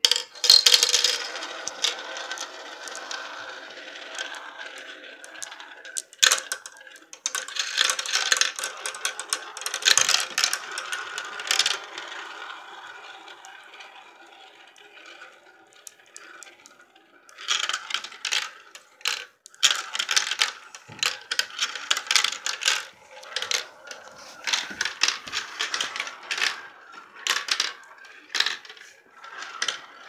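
Marbles rolling around the plastic funnel bowls of a toy marble run, a steady rolling rattle with a ringing hum and sharp clicks as they knock together and drop through the chutes. It thins out a little before halfway, then clatters again with many quick clicks.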